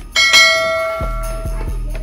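Notification-bell sound effect from a subscribe-button animation: a click and a bright bell ding that rings out and fades over about a second. Low bass notes of background music sound beneath it.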